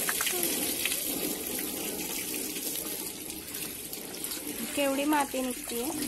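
Steady stream of water from a garden hose running over a scooter's front wheel and mudguard and splashing onto the wet ground as it is washed.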